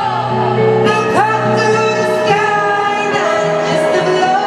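Live female singing with acoustic guitar accompaniment, heard through the echo of a large arena, with long held notes and a sliding sung phrase about a second in.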